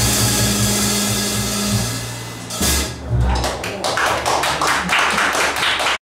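A jazz band's final held chord, with low sustained bass notes and a cymbal wash, rings out and stops about two and a half seconds in. It is followed by scattered handclapping from a small audience.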